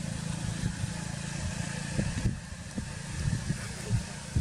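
Steady low rumble of motor traffic on a road, with a few soft knocks in the second half.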